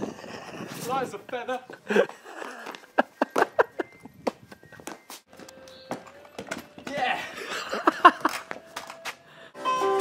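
Short snatches of voices, with a quick run of sharp clicks in the middle.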